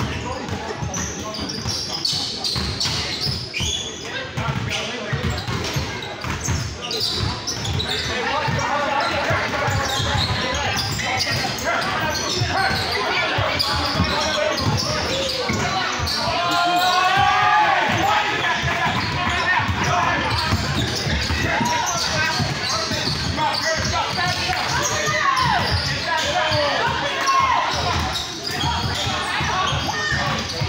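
A basketball bouncing on a gym court during play, under steady overlapping chatter and calls from spectators and players in a large, reverberant hall.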